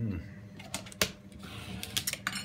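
A few sharp clicks and light knocks of a metal spoon being handled and set down on a wooden chopping board, the loudest about a second in.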